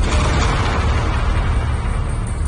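A dramatic sound-effect hit in a TV serial's background score: a sudden noisy swell that fades over about a second and a half, over a deep steady rumble.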